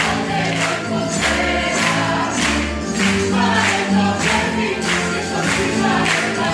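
A stage cast singing a song together in chorus over music with a bass line and a steady beat of about two strokes a second.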